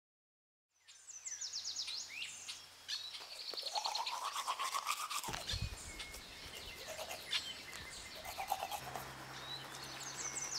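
Birds chirping and calling, with a person brushing their teeth close by in quick scrubbing strokes. The sound begins about a second in, after silence.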